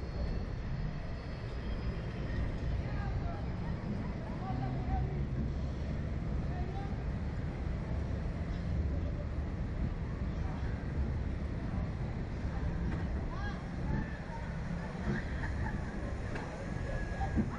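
Steady low rumble of wind on the microphone of a camera mounted on a swinging Slingshot ride capsule, with faint voices murmuring now and then.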